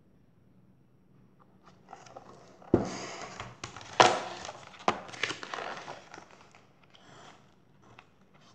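Paper pages of a large picture book rustling and crackling as the book is handled and set down, with two sharp knocks, the louder about four seconds in.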